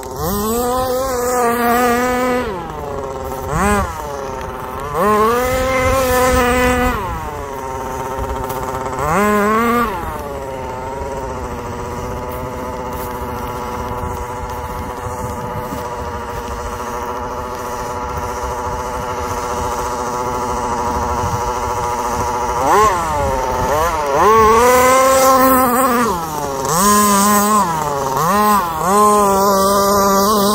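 Small two-stroke engine of a radio-controlled car running hard, its pitch rising and falling over and over as the throttle is opened and shut. Through the middle it holds a fairly steady high-rev note before the revving resumes near the end.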